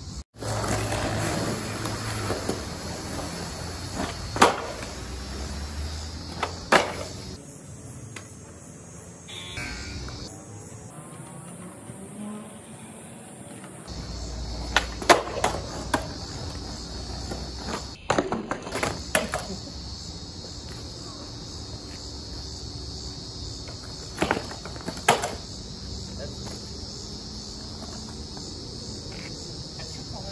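Skateboard tricks on concrete: a handful of sharp wooden clacks spread through, the board popping off its tail and landing or clattering onto the ground, with wheels rolling between. A steady high insect drone runs behind throughout.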